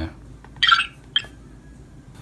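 Electronic chirp-beeps from a Raspberry Pi–modded Star Trek TNG tricorder's speaker as a button is pressed and the screen changes: a brief chirp about half a second in and a shorter blip just after a second.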